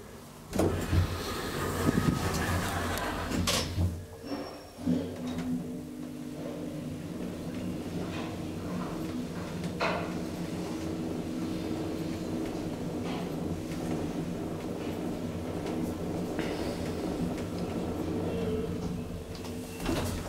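Schindler traction elevator: the car's sliding doors close with a few knocks and rumbles in the first few seconds, then the car travels with a steady low hum from about five seconds in until it arrives near the end.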